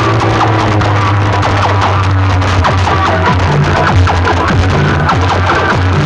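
Loud electronic dance music blasting through a DJ box sound system: stacked power amplifiers driving horn loudspeakers. A heavy, steady bass line runs under a short-note melody.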